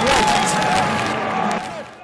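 Stadium crowd noise, cheering and clapping, with a voice over it early on; the crowd sound fades away in the second half.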